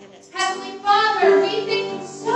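A woman singing a worship song into a microphone with piano accompaniment; the sung phrase comes in about half a second in after a brief lull.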